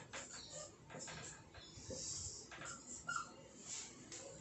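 Faint scratching strokes of a marker pen writing on a whiteboard, with a short squeak about three seconds in.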